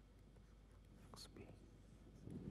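Near silence: low room tone, with one faint, brief sound a little over a second in.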